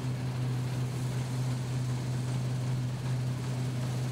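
A steady, unchanging low mechanical drone, like a running engine.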